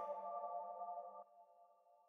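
The last held synth chord of an electronic dubstep track, a few steady tones ringing out faintly and dying away about a second and a quarter in.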